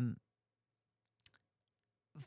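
A woman's voice trails off at the end of a hesitant "um", then near silence broken by one faint, brief click a little past the middle.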